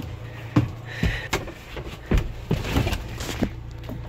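A series of knocks and clunks as a person climbs into a tractor cab and handles its controls, with a steady low hum underneath.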